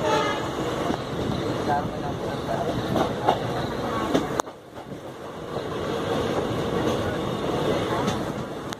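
Running noise of a passenger train heard from an open coach door: wheels rolling on the rails with rushing wind. The level drops suddenly about halfway through, then builds back up.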